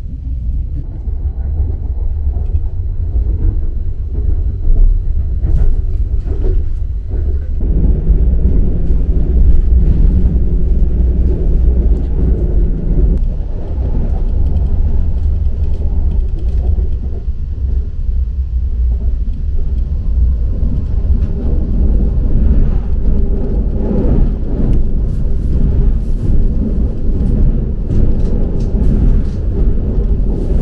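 Running noise heard inside the carriage of an ITX-MAUM electric multiple-unit train at speed: a steady low rumble with scattered short clicks from the wheels on the track.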